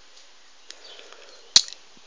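Faint steady hiss with one sharp click about one and a half seconds in, a handling noise as the doll box is held and moved in front of the camera.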